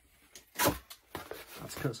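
Cardboard being folded and handled on a table: one loud sharp crack a little over half a second in, then lighter rustles and taps.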